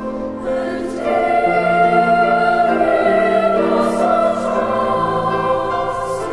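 Youth choir of girls' and boys' voices singing in parts, holding long sustained notes that change in steps; the sound swells louder about a second in.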